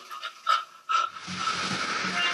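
Two short bursts of a person breathing hard, then a steady hiss.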